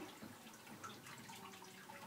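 Near silence: room tone with a few faint small clicks.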